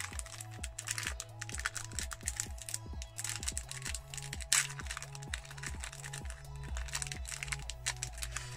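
A plastic snack wrapper crinkling and crackling in quick irregular bursts as a chocolate bar is unwrapped, over background music with a stepping bass line.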